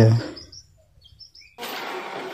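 A few faint, high bird chirps in a lull after a spoken word, followed by steady background noise that sets in abruptly near the end.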